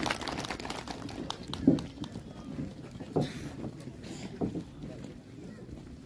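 Footsteps and shuffling of a group walking off a tiled stage: scattered clicks and a few louder thumps, the loudest nearly two seconds in. Indistinct voices run underneath.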